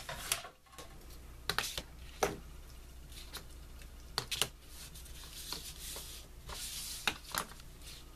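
A clear plastic ruler and a craft punch being handled on paper over a cutting mat: scattered light taps and clicks, with a soft sliding rustle near the end as the ruler is lined up.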